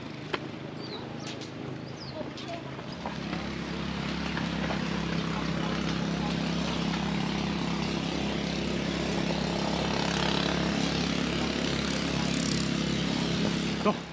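A motor engine running steadily, getting louder about three seconds in. A few short high chirps come in the first two seconds.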